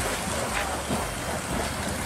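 Steady rushing and splashing of water as a man runs fast through shallow water across boards set just below the surface, his feet throwing up spray.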